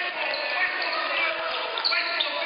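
Basketball dribbling on a hardwood gym floor with players' footsteps, over the voices of people in the gym.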